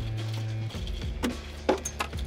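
Background music with a steady low note, with a few sharp knocks from a freshly gaffed cobia thumping on the boat's fiberglass deck, about a second in and again shortly after.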